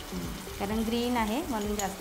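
A mint-coriander masala sizzles in an oiled kadhai, a steady frying hiss under a woman's voice.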